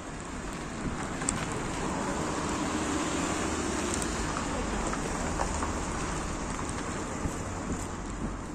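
Tyre hiss of traffic on a wet street, swelling for a few seconds in the middle as a car passes, then easing off.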